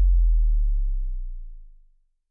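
Deep sub-bass tone, the last note of an electronic outro sting, held steady and fading away until it dies out near the end.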